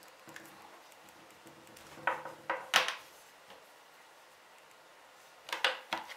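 Metal crocodile clips on power-supply test leads being unclipped and handled, making a few sharp clicks about two to three seconds in, the last of these the loudest, then more handling clicks near the end.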